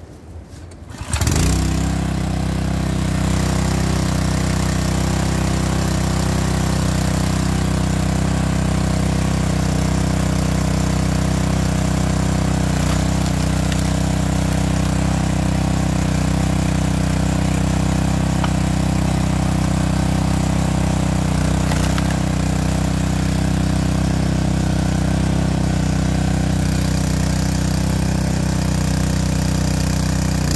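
The 209cc single-cylinder gas engine of a SuperHandy 20-ton hydraulic log splitter starts up about a second in, then runs steadily at a constant speed.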